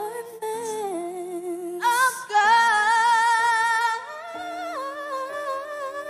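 A female vocal trio singing in harmony into microphones, the lead voice rising to a louder, higher held note with a wavering pitch from about two seconds in, then dropping back.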